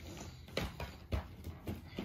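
A crayon colouring on a sketchbook page: a few soft, irregular taps and scratches about half a second apart.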